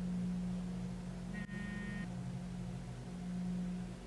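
A steady low hum, with a brief high-pitched tone about a second and a half in.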